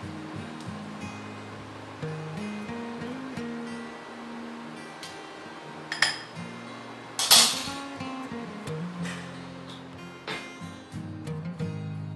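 Soft background guitar music, with a few sharp clinks of a spoon against a glass bowl. The loudest clink comes a little past the middle.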